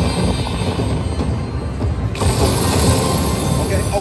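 Aristocrat slot machine in a free-spin bonus: game music and reel-spin sound effects as wild symbols are added to the reels, over dense casino noise. A brighter, hissier effect comes in about halfway through.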